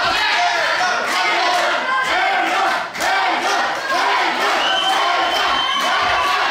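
Fight crowd yelling and shouting encouragement, many voices overlapping without a break, with sharp slaps mixed in.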